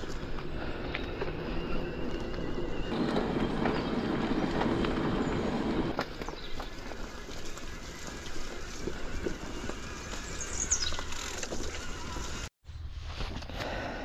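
Mountain bike riding along a park path and a muddy woodland trail: a steady rolling rush of tyres and bike noise, rougher and louder for a few seconds early on, with a short high falling squeak a little before the end.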